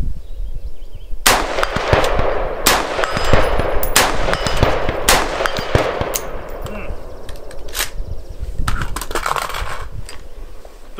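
Bear Creek Arsenal AR-15-style rifle fired in slow, aimed semi-automatic shots, about six or seven, each a second or so apart, starting just over a second in, with each report echoing briefly.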